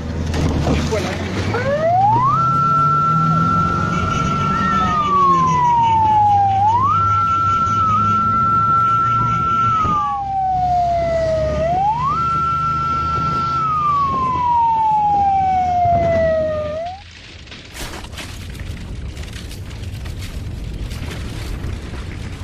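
A siren wailing over the drone of motorbike engines. Three times it rises quickly to a high steady note, holds it for a couple of seconds, then slides slowly down. It cuts off abruptly about 17 seconds in, leaving a lower, noisy rumble.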